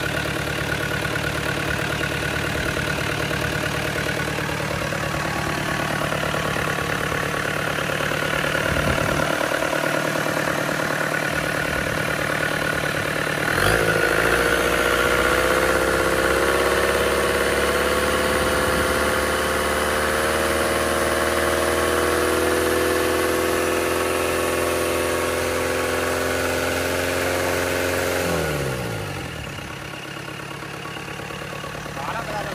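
FAW 498 four-cylinder turbo diesel engine running bare on a test stand during a test run. It idles at first, its speed steps up about halfway through and holds, creeping a little higher, then it winds down and stops near the end.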